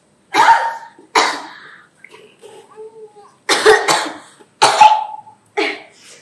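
A woman coughing hard, about five coughs: two in the first second and a half, then three more in quick succession from about three and a half seconds in.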